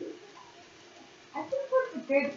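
A person's voice: a brief low falling hum at the start, then pitched vocalising that begins about one and a half seconds in.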